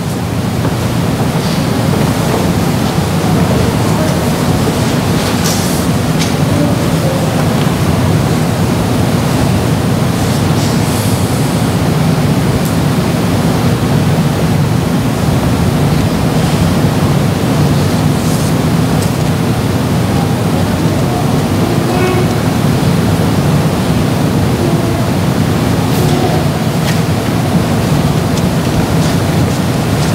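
Steady, loud hiss of room noise in a hushed church sanctuary, with a few faint scattered sounds from the congregation.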